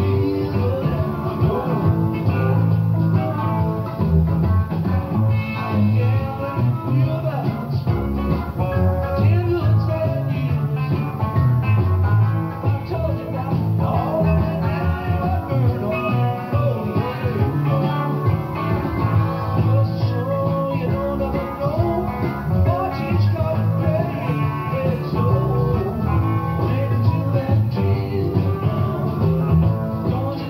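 Guitar-led rock song with bass, played continuously from an old cassette tape of a 1982 FM radio broadcast.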